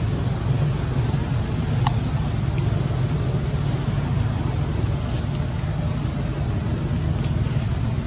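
Steady low rumble of outdoor background noise, with faint short high chirps now and then and a brief sharp click about two seconds in.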